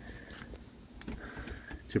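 A quiet pause in speech: faint background noise with a faint high steady tone coming and going and a couple of light clicks, then the start of a spoken word right at the end.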